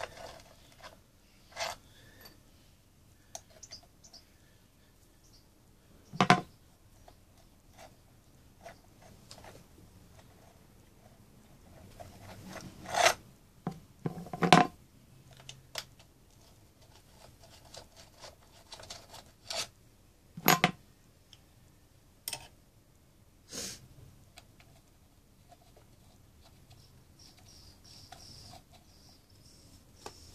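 Several sharp metallic clicks and clinks, spread irregularly with quiet between them, from a hand tool and small bolts as the bolts are undone and taken out of a motorcycle's front sprocket cover.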